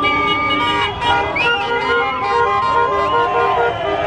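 Many car horns honking together, some in quick repeated toots and some held long, over a crowd's shouting and the low rumble of slow-moving traffic.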